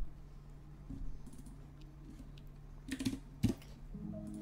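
Keystrokes on a computer keyboard and mouse clicks as a discount value is entered in the program: a few scattered clicks about a second in, then a short, louder cluster around three seconds in. A low steady hum runs underneath.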